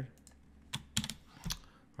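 A few keystrokes on a computer keyboard: three separate sharp clicks spread over about a second, starting just under a second in.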